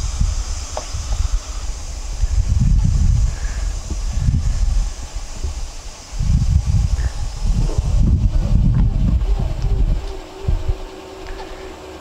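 Truck-mounted NightScan light mast lowering itself into its stowed position on auto-stow, with a steady hiss that stops about eight seconds in and a faint hum near the end. Wind rumbles on the microphone in gusts and is the loudest sound.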